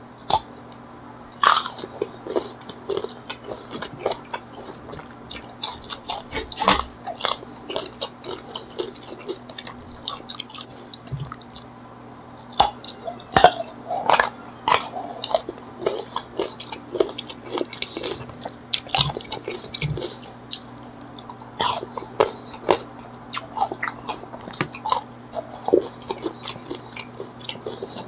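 Close-miked biting and chewing of crisp, unripe green mango slices: an irregular run of sharp crunches and chews, the loudest bites about a second and a half in and again around thirteen seconds.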